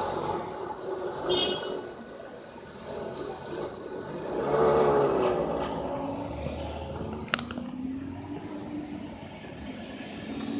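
Lamborghini Gallardo Spyder's V10 engine pulling away at low speed, rising in pitch to its loudest about four to five seconds in, then settling lower as the car drives off. A single sharp click about seven seconds in.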